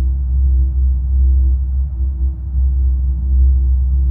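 Binaural-beat ambient drone: a strong, steady low hum with a held higher tone above it, without a melody.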